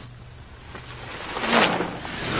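Skis sliding across a wooden parquet floor: a rush of scraping noise that rises and peaks about one and a half seconds in, then falls away.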